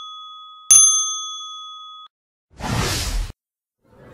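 A bell-like ding sound effect: one strike rings out from the start, and a second is struck about two-thirds of a second in, ringing and fading until it cuts off about two seconds in. A short whoosh follows near the three-second mark.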